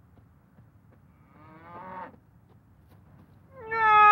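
A cow mooing: a faint rising-and-falling moo about a second and a half in, then a loud, long, steady moo starting near the end.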